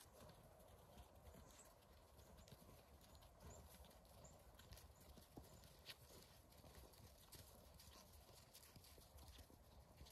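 Very faint footsteps of a herd of goats walking over snow: a loose patter of small hoof steps.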